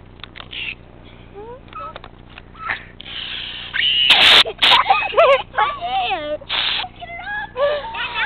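Aerosol can of silly string spraying in short hisses, the loudest about four seconds in, mixed with children's shrieks and whining cries.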